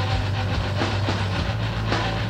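Lo-fi screamo band recording: distorted guitar and bass hold a heavy, droning low end under irregular drum and cymbal hits.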